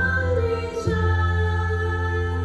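A small group of children singing together on long held notes, with instrumental music underneath.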